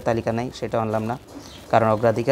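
A man's voice in drawn-out, hesitating vowel sounds, with a short pause shortly before the end.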